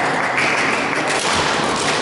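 Badminton rally: sharp racket strikes on the shuttlecock and players' footwork on the court floor, echoing in a large hall, with a steady noisy background throughout.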